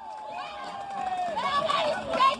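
Men's voices calling out across an open football pitch: one long held call, then several shorter overlapping shouts near the end.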